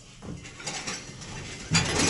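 A cart rattling and clinking as it is wheeled into the elevator car, getting louder near the end.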